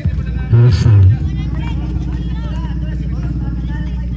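Voices at an outdoor basketball game: a loud shout about half a second in, then scattered background chatter over a steady low hum.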